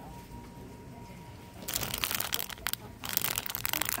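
Crinkling of a plastic bag of craft pom poms being grabbed off the peg and handled. It starts a little before halfway as quick, dense crackles, with a short break near three seconds. Before it there is only quiet store background with a faint steady whine.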